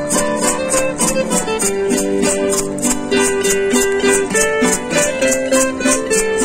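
Two acoustic guitars playing an instrumental passage, one picking a lead melody over the other's strummed accompaniment, with a steady high shaking beat about four times a second.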